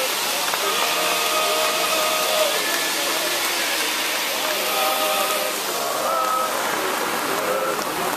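A steady hiss, with voices over it that hold drawn-out tones.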